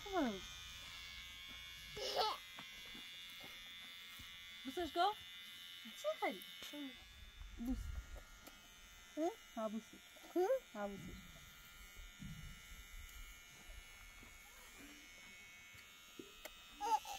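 Electric hair clippers buzzing steadily as a small child's hair is cut; the buzz is fainter in the second half. A small child gives short vocal sounds throughout.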